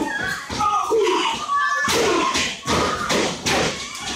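Crowd shouting, with children's voices among them, over repeated sharp thuds and smacks from professional wrestlers striking each other and hitting the ring.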